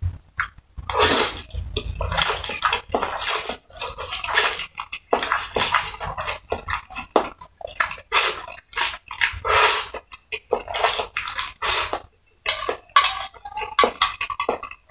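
A person slurping and chewing black bean sauce noodles close to the microphone: quick wet slurps and mouth noises in rapid irregular bursts, with a brief pause near the end.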